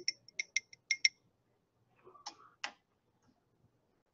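Faint light clinks of a glass lab beaker being handled: a quick run of about seven small ticks in the first second, then two more a little after the middle.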